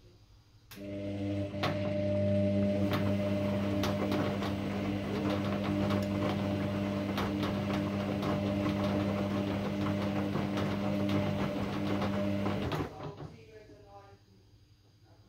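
Kogan front-loading washing machine on a quick wash, its drum motor running with a steady hum while the wet load tumbles, with many quick clicks and knocks. It starts about a second in and stops abruptly about a second before the end.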